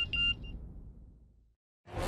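A mobile phone's message alert: two or three short, high electronic beeps at the very start. Background music fades away behind them, breaks off in a moment of silence, and comes back in near the end.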